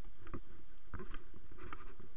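Footsteps on wet rocks and knocks from the carried camera, irregular scuffs over a steady low rumble, heard muffled.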